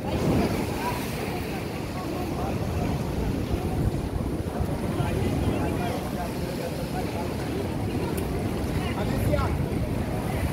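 Wind buffeting the microphone in a steady low rumble, with people's voices chattering in the background.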